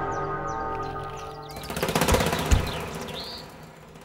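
Dramatic background score: a sustained chord held under everything and slowly fading, joined about a second and a half in by a fast rattling roll with a sharp hit near the middle. A few high bird chirps sound over it.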